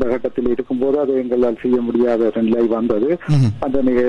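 Speech only: a man talking steadily, with thin, telephone-like sound.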